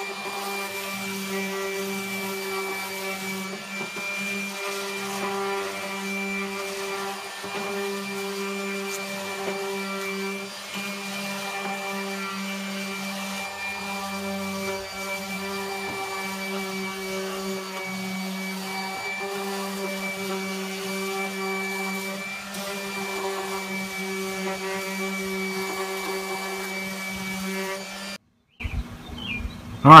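Ridgid random orbital sander with 60-grit paper running steadily against a wooden handrail, a constant motor hum with a high whine above it. It cuts off abruptly near the end.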